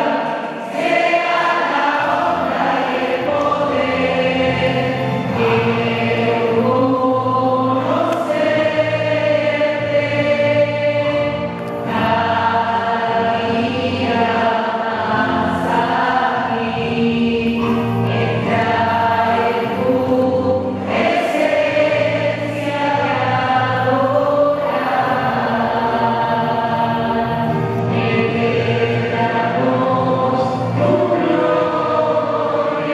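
A choir singing a devotional worship song with instrumental accompaniment, a sustained low bass coming in about two seconds in.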